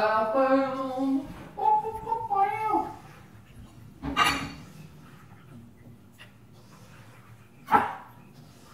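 A dog making two drawn-out pitched cries over the first three seconds, the second higher and bending down at its end. A short sharp noise follows about four seconds in, and another comes near the end.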